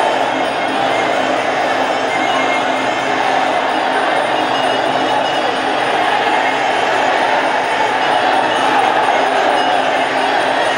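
Traditional Muay Thai ring music (sarama), Thai oboe and drums playing continuously over steady crowd noise.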